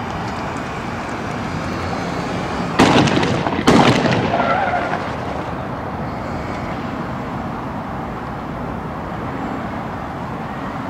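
Two loud bangs about a second apart, each trailing off briefly, over the steady rumble of an armoured police vehicle's engine.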